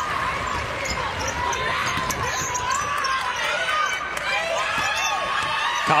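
Basketball being dribbled on a hardwood court, with sneakers squeaking in short curving chirps and a steady murmur from the arena crowd.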